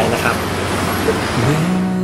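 Steady background hiss and rumble under a man's last spoken words. About one and a half seconds in, a song begins with a singer's voice rising into a long held note.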